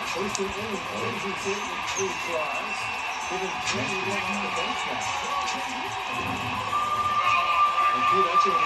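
Arena sound from a TV basketball broadcast: voices and crowd murmur with music playing underneath. A steady high note comes in near the end.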